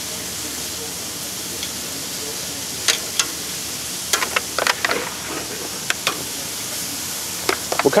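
Thin-sliced marinated beef (bulgogi) sizzling on a hot gas grill, a steady hiss. From about three seconds in, metal tongs click sharply against the grill grates and the foil pan, several times in small clusters.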